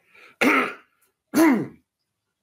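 A man clearing his throat with two short, rough coughs about a second apart, the second ending in a falling voiced grunt.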